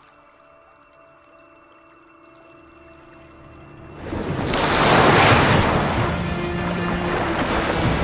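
Soft background music. About halfway through, a loud rush of water surges in and stays: dolphins driving a bow wave onto a mud bank and splashing up onto it as they strand-feed on fish.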